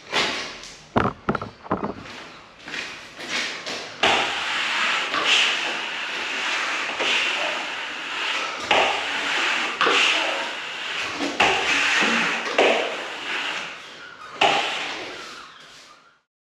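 A plastic plastering trowel swept dry over a setting skim coat of plaster, a scraping hiss that swells with each stroke about every second and a half, polishing the surface to a smooth finish. A few sharp knocks come in the first two seconds.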